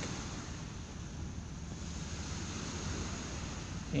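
Steady outdoor background noise: an even, soft hiss with no distinct events.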